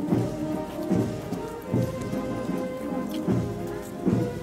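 A village brass band playing a slow processional march, with sustained brass chords and a bass drum beating about every 0.8 seconds.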